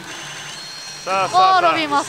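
Steady pachinko parlour background din for about a second, then a voice cuts in and carries on to the end.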